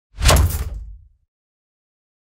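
Intro sound effect: a single hit with a heavy low end that fades away within about a second.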